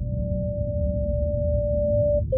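A single steady pure test tone held for about two seconds, of the kind played through earbuds in a hearing test that builds a personal hearing profile, over a low rumbling drone.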